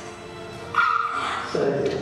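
A woman sobbing: a high, held whimpering cry about a second in, then a lower cry, over soft background music.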